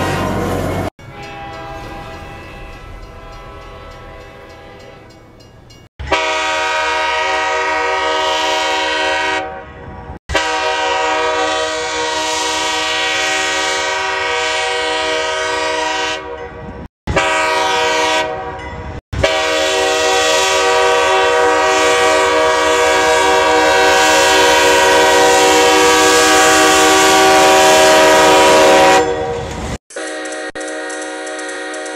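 Nathan Airchime K5H five-chime locomotive air horn sounding a series of long blasts, each a steady multi-note chord, spliced together with abrupt cuts. A quieter blast fades away first, then come four loud ones, the last about ten seconds long and swelling slightly.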